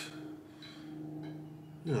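Quiet room tone with a faint steady low hum, broken near the end by a man's short "oh".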